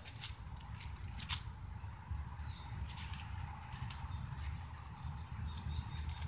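Steady, high-pitched chorus of insects trilling without a break, with a few soft ticks and rustles of paper pages being turned.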